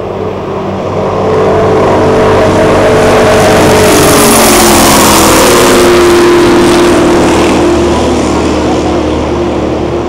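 Twin-turbo big-block V8 ski race boat passing close at full speed: its loud engine drone builds, peaks with a rush of high hiss about four to five seconds in, then drops in pitch and eases off as it goes away.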